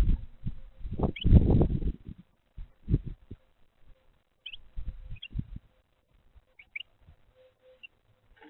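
A Carolina wren moving about on a bird-feeder tray right against the microphone: loud low scuffs and thumps from its hops and pecks, heaviest in the first two seconds, with a few short high bird chirps scattered through.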